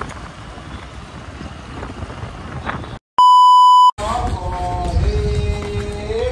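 Faint steady street and riding noise, then about three seconds in a loud, pure electronic beep at one pitch lasting under a second, set off by a brief dead silence. After it, a new stretch begins with a long held note and voices over low rumble.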